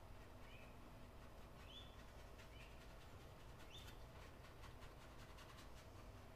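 Near silence: faint room tone with a few brief, faint high chirps spaced about a second apart.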